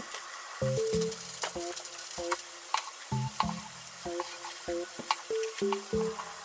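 Lotus root slices sizzling in oil in a frying pan, a steady hiss, with a few light clicks as pieces go into the pan.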